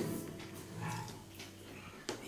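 Quiet eating sounds of a man eating rice and curry with his hand: chewing and mouth noises, with a short low hum of the voice about half a second to a second in.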